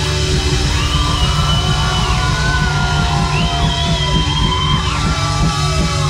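Live rock band playing loud: drum kit and electric guitars, with two long held high notes over the steady beat.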